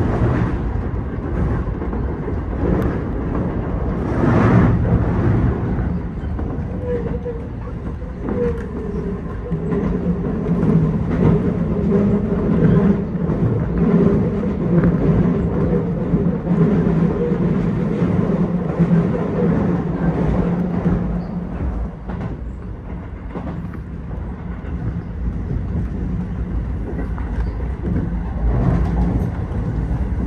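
Keio 8000 series electric train running, heard from behind the driver's cab: a steady mix of motor and wheel-on-rail noise.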